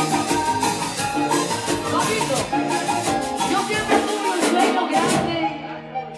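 Live Latin band music led by an accordion, with hand drums and other percussion keeping a steady beat; the music thins out and drops in level near the end.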